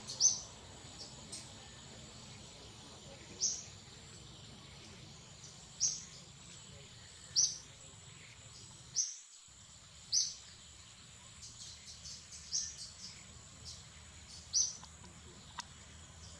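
A bird chirping: about eight short, high chirps, each a quick downward sweep, repeated every couple of seconds over a faint steady high whine and soft background hiss.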